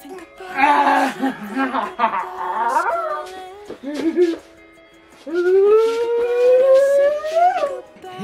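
Vocal sounds in the first three seconds, then one long cry starting about five seconds in that rises steadily in pitch for over two seconds and breaks off, over soft background music.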